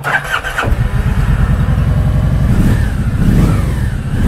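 Kawasaki Vulcan 1700 Vaquero's 1700cc V-twin cranking on the electric starter and catching under a second in, then running with a pulsing beat. The revs rise and fall once about three seconds in.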